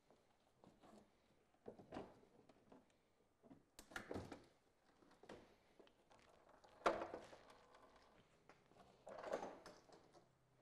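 Plastic front bumper cover of a VW Golf R Mk7 being worked free and pulled off the car: a few scattered knocks and clicks of plastic, the sharpest about seven seconds in.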